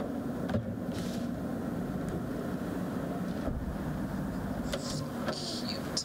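Room tone: a steady low hum, with a few soft clicks and short rustles near the end.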